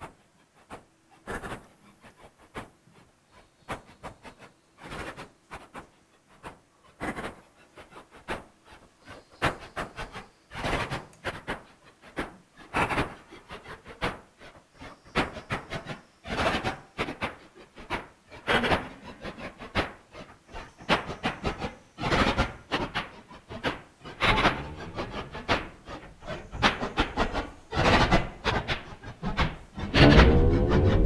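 A recorded electroacoustic sound object played back: a regularly organised rhythm of sharp taps and clicks that grows denser and louder, as if something were arriving, with pitched tones coming in near the end.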